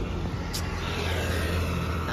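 Steady low rumble of road traffic on a four-lane highway, heard from a moving bicycle, with a faint swell about a second in as a vehicle goes by.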